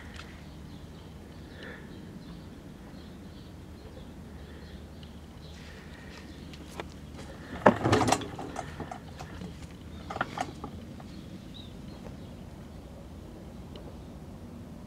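Handling noises from working on the open TV chassis and camera: a few clicks and rustles, loudest in a short cluster about eight seconds in and again briefly around ten seconds, over a steady low background hum.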